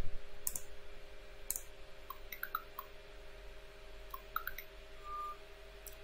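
A LEGO SPIKE Prime motor briefly turning the robot's lifting arm down 40 degrees at slow speed, heard as faint short whirs and ticks. There are also two sharp clicks about half a second and a second and a half in.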